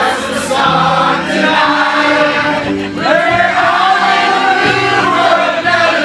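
A group of people singing together loudly in unison, like a bar sing-along, holding one long note for the second half.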